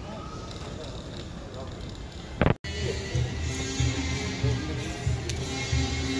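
Hall ambience with a low murmur of voices, broken about two and a half seconds in by a short loud pop and a sudden dropout, then background music with a steady beat about twice a second.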